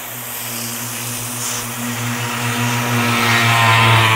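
Garden hose spray nozzle hissing onto the soil and seedlings of a raised bed, the spray growing louder toward the end. Under it runs a steady low mechanical hum.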